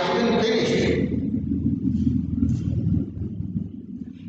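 A man's voice briefly at the start, then a low, fluctuating rumble for about two and a half seconds that fades away just before the end.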